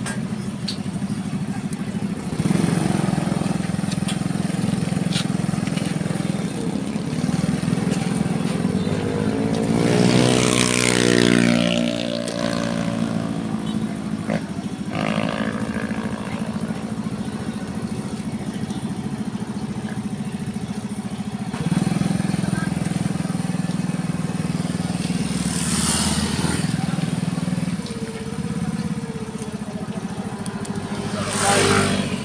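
A motor vehicle engine running steadily at low revs, weaker for a while in the middle and stronger again about 22 seconds in. About ten seconds in, another vehicle passes close by, its engine pitch falling as it goes past, and a second vehicle goes by with a rush of noise near the end.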